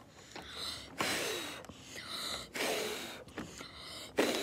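A person breathing hard close to the microphone: a run of audible breaths, each starting sharply and fading, about one every second.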